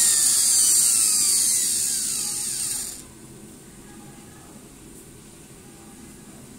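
Makita 9500 angle grinder motor running with its gear head removed, a high whine falling in pitch as it coasts down and stops about three seconds in. It runs very smoothly, with no fault noise, which places the noise in the gear head.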